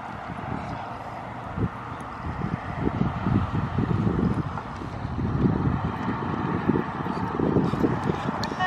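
Wind buffeting the microphone: an uneven low rumble of gusts that grows stronger after the first few seconds.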